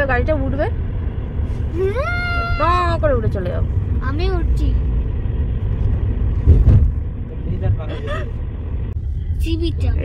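Steady low rumble of a car's engine and road noise heard from inside the moving car, with a person's voice speaking a few drawn-out words, and one sharp thump about six and a half seconds in.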